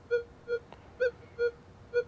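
Minelab Manticore metal detector with an 8-inch coil giving five short, low beeps, about two a second, as the coil sweeps over a tiny gold nugget. This is a target audio response at about the limit of the detector's range, with no target ID registering.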